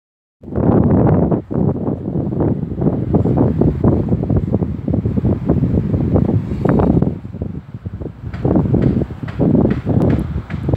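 Wind buffeting the microphone, a loud, uneven low rumble that comes in gusts. It drops off briefly a second or so in and again around three quarters of the way through.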